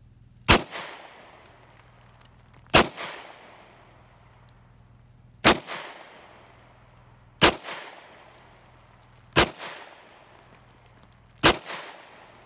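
Six single gunshots fired at a slow, uneven pace about two seconds apart, each sharp crack followed by a short echo that dies away.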